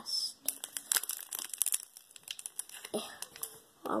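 Foil wrapper of a Pokémon Evolutions booster pack crinkling and tearing as it is worked open by hand: a dense run of sharp, irregular crackles.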